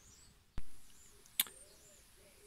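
Two short knocks, the first louder with a brief low ring-out and the second a sharper, quieter click just under a second later.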